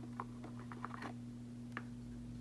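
Faint, light clicks and taps of a small box being handled as its lid is opened, a handful scattered over two seconds, over a steady low hum.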